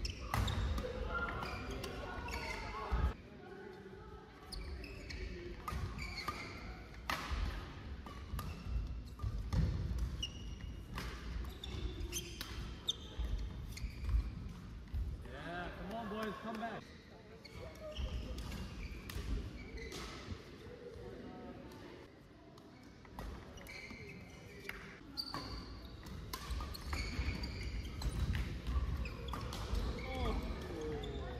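Badminton rally in a large, echoing sports hall: sharp racket strikes on the shuttlecock at irregular intervals, with players' shoes on the court.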